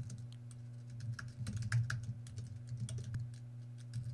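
Computer keyboard typing: a run of quick, irregular keystroke clicks over a faint steady low hum.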